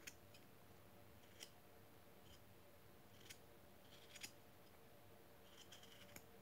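Faint, irregular clicks of a knife blade paring shavings off a small wooden stick during whittling, about half a dozen cuts against near silence.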